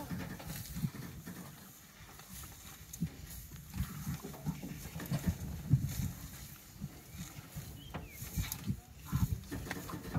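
Sri Lankan elephants feeding on grass: irregular low thuds and rustling as they pull up and work the grass clumps.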